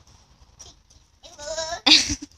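A young child's high, wavering vocal sound about a second and a half in, followed by a short, loud burst of voice just before the end.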